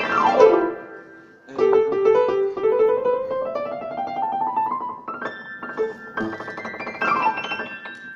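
Upright piano played four-handed in rock-and-roll style. It opens with a downward glissando, dips briefly about a second in, then climbs in a long rising run of notes, and ends with two more sweeping downward glissandi.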